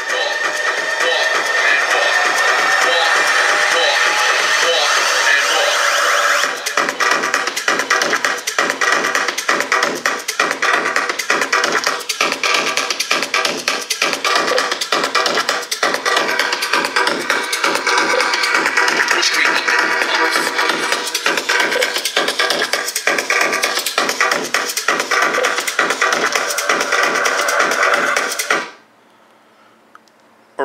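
Electronic music played at full volume through an iSound Twist portable Bluetooth speaker; a steady beat comes in about six seconds in. The music stops suddenly near the end.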